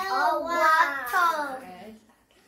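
A young girl singing a short phrase in a high child's voice, stopping just before the end.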